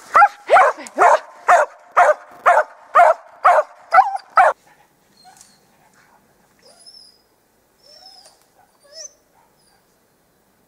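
Hunting dog barking in a steady series of about two barks a second, ten in all, that stop abruptly about four and a half seconds in. This is the typical bay-barking (ståndskall) of a dog holding game that has gone up a tree.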